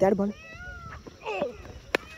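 A single sharp crack just before the end: a cricket bat striking a tennis ball.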